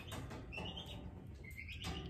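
Chicks peeping faintly in the background, a few short rising chirps.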